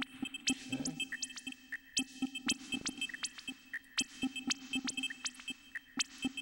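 Glitchy electronic drum pattern from a Reason Redrum and Thor patch: a dense, irregular stream of sharp clicks and short rising chirps over repeated high beeps and a pulsing low tone.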